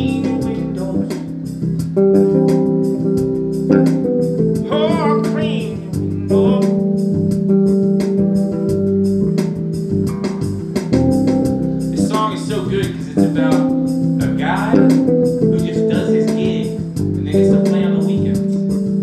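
Live jam-rock music built on an electric bass, with held low notes and changing chords. Wavering higher notes come in about five seconds in and again around twelve to fifteen seconds in.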